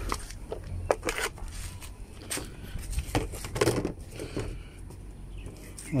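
Plastic car cover panel being handled and fitted back in place, giving scattered knocks and clicks over a low background rumble.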